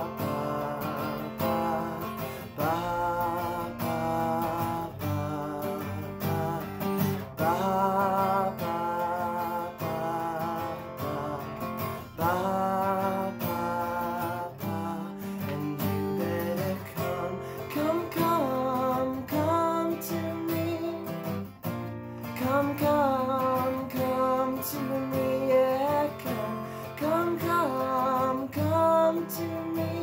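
Steel-string acoustic guitar strummed through a slow song, with a man singing long, wavering notes over it.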